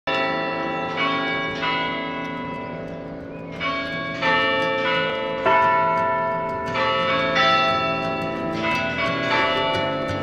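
Cathedral carillon bells playing a tune: single bell notes at changing pitches, struck about every half second to second and a half, each ringing on and overlapping the next.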